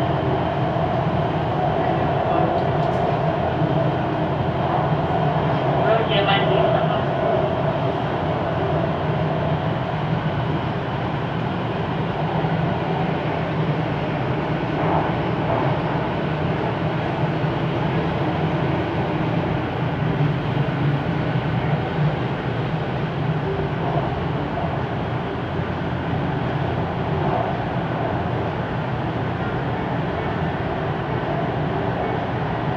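Siemens Inspiro metro train running through a tunnel, heard from inside the driver's cab: a steady rumble of wheels on rail with a steady hum, and a higher tone that stands out for the first several seconds.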